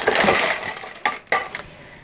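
Pumice and LECA pebbles rattling in a plastic cup as it is handled, a brief clattery rustle followed by two sharp clicks a little after a second in.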